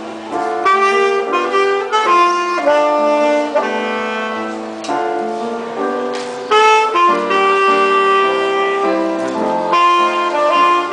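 Alto saxophone playing a jazz melody of short and held notes over keyboard accompaniment.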